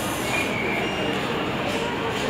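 Steady background din of a busy public space, a noisy wash with faint, indistinct voices in it.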